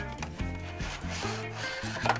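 Cardboard product box being slid and pulled open by hand, paperboard rubbing and scraping against paperboard, with background music underneath.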